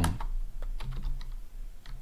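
Typing on a computer keyboard: a run of unevenly spaced key clicks.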